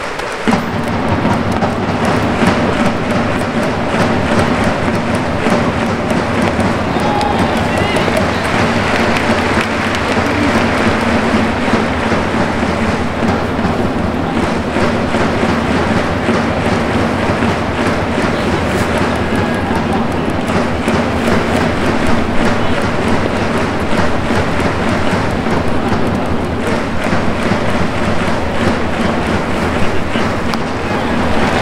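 Baseball stadium crowd with an organised cheering section chanting and playing music without a break, loud and steady.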